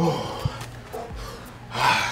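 A man's short vocal grunts and breathy gasps. A pitched grunt comes right at the start, and the loudest sound is a strong rushing breath near the end.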